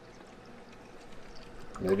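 Sparkling water poured from an aluminium can into a paper cup of lemonade: a faint, steady pour.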